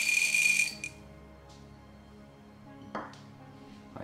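Green coffee beans poured into a coffee roaster's steel-lined doser, a dense rattle that stops abruptly within the first second. Then a faint click and a single light knock about three seconds in, over quiet background music.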